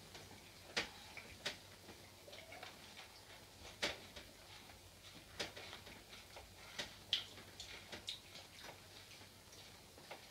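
Faint, irregularly spaced wet mouth clicks and lip smacks as a sip of whisky is worked around the mouth while it is tasted.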